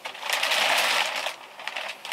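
Clear plastic wrap on a new mattress crinkling and rustling as a person sits down on it, the crackle fading out about a second and a half in.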